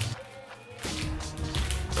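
Background music with steady low sustained tones, quiet for the first moment and then coming back in. A plastic candy-bar wrapper is torn open right at the start.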